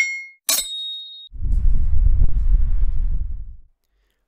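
Intro sound effect: two sharp metallic clangs with a ringing tone, one at the start and one about half a second in. They are followed by a low rumble lasting about two seconds that dies away.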